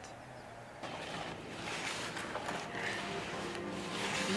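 Hands mixing damp feeder groundbait in a plastic bucket: a soft, gritty rustling that starts about a second in and slowly grows.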